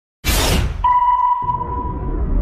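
Intro sound effects: a sudden whoosh about a quarter of a second in, then a low rumble under a steady, high ping-like tone that comes in just before the first second and holds.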